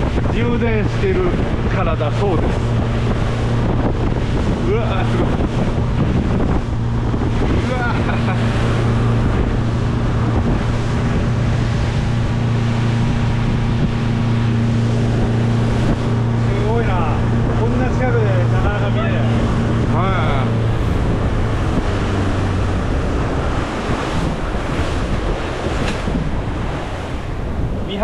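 Motorboat underway at speed: wind buffets the microphone over the rush of water along the hull, with the engine's steady low hum underneath. The engine hum fades a little over twenty seconds in.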